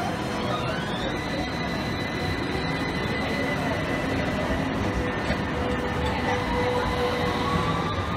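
Electric street tram running close by, its motors giving a steady high whine with tones that climb in pitch, over street noise.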